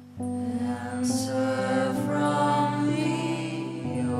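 Slow, sustained live band music: held chords come in just after the start and shift about every second, with a brief high shimmer about a second in and again at two seconds.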